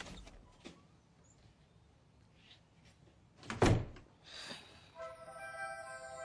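A soft thud, a few light knocks, then a louder thump with rustling of bedding about three and a half seconds in. Soft film music with held notes comes in near the end.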